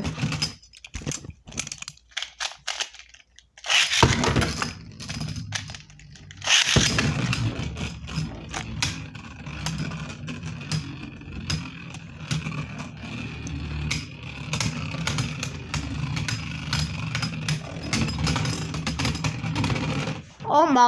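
Beyblade spinning tops launched into a plastic stadium, with sharp launch noises about four and six and a half seconds in. Two tops spinning and clashing follow: a steady whirring hum broken by many small clicks of impact.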